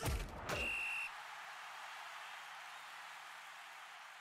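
Video transition sound effect: a sudden whoosh hit at the start, a brief high electronic tone about half a second in, then a soft hiss that slowly fades away.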